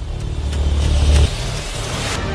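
Eurocopter EC120 Colibri helicopters running, a steady turbine and rotor noise with a deep rumble that drops away just over a second in.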